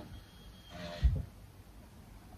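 A brief, faint breathy vocal sound from the woman, followed just after a second in by a short, soft low thump.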